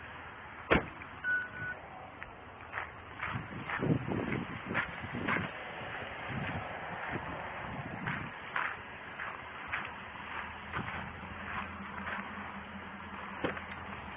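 Footsteps on roadside gravel and clothing rustling against a body-worn camera, with a sharp knock a little under a second in and a short beep just after it. A car idles with a low steady hum in the later half.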